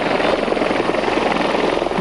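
Helicopter landing on a rooftop helipad, its rotor beating steadily and rapidly as it descends.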